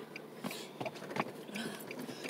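Passengers climbing into the back seat of a parked car: three short, soft knocks and clicks with rustling, and a faint voice near the end.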